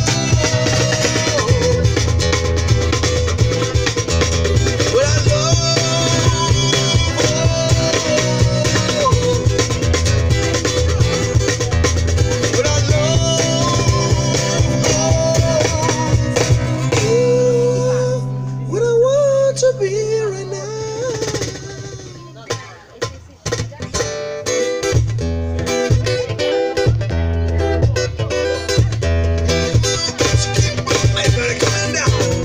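Live acoustic music from a street duo: guitar with a sung melody. About 17 seconds in, the low accompaniment drops away under the voice. Around 22 seconds the music goes quieter for a moment, then the full accompaniment comes back.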